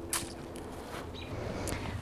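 Quiet pause with faint handling rustles and a couple of soft clicks, as of a person moving with a lapel microphone on her clothing.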